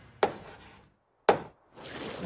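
Two sharp taps of chalk on a blackboard, about a second apart, followed by a faint scrape of chalk near the end.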